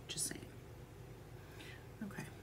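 A woman's soft breathy vocal sound, like a whispered word or quiet exhale, about a quarter second in, with a fainter breath near the end, over a low steady hum.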